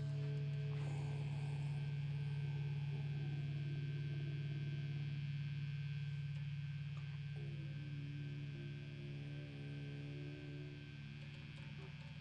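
Sustained electric guitar drone ringing on through the effects and amplifier while the strings are not being played, slowly fading, over a steady low hum. A new held chord-like tone comes in about halfway through.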